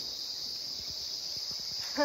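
Steady, high-pitched drone of an insect chorus in the forest, unbroken throughout.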